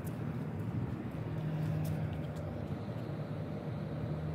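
Steady low mechanical hum with a held low tone, over outdoor background noise.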